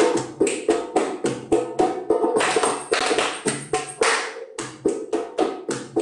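Body percussion keeping an oriental rhythm: dry pats, slaps and finger snaps, about three to four strokes a second, over steady held tones. A hiss comes in about two seconds in and stops about four seconds in.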